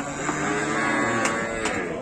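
A cow mooing: one long low call of just over a second, followed by a couple of sharp clicks.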